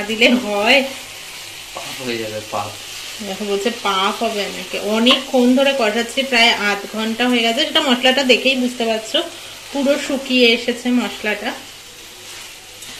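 Mutton and potato curry sizzling in a nonstick kadai as it is stirred and turned with a silicone spatula. A voice sings through it, with some notes held for about a second.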